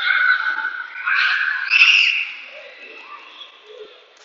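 A group of young children shouting excitedly in high-pitched voices, two loud outbursts in the first two seconds, then quieter chatter.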